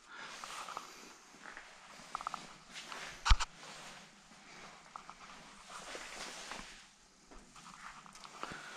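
Quiet footsteps and handling noise from a handheld camera, with scattered light clicks and one sharp click about three seconds in.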